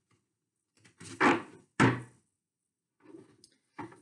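A tarot deck being shuffled by hand, with two sharp taps of the cards about half a second apart a little over a second in, and faint card noises near the end.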